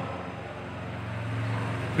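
Low steady background rumble, swelling slightly in the second half, like road traffic.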